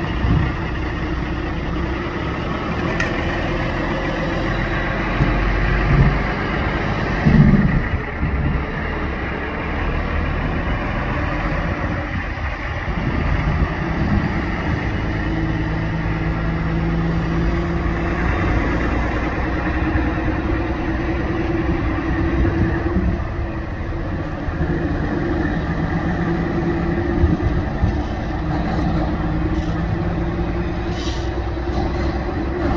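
Heavy-duty tow truck's diesel engine running steadily under street traffic noise, with a few louder surges in the first third.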